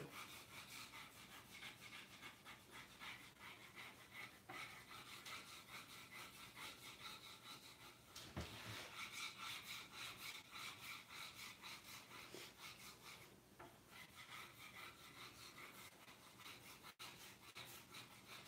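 Faint, quick back-and-forth rubbing of fingers over a sheet of paper laid on a wooden board, burnishing an inkjet print from the paper onto the wood.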